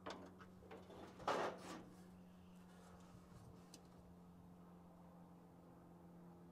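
Car battery cable and terminal being handled: a few light metallic clicks, then a short scrape about a second in, as the cable is fitted to the battery post without a proper terminal clamp. A faint steady low hum continues underneath.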